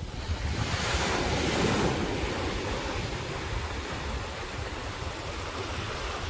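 Small waves breaking and washing up over the sand at the water's edge. The hiss of the surf swells about a second in, then settles, with wind buffeting the microphone underneath.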